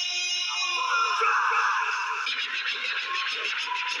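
Hip-hop backing track: a held chord fades in the first half second, then a hissing noise swells, and a steady drum beat comes in a little past two seconds.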